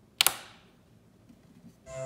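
Small plastic light switch on a toy cafe set flicked on: two quick sharp clicks about a quarter second in, switching on the set's lights.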